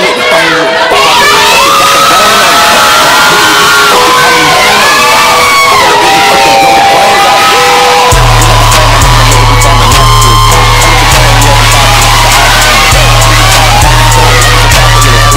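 Loud hip hop music with an audience cheering and whooping over it; a heavy bass line and a fast ticking beat come in about eight seconds in.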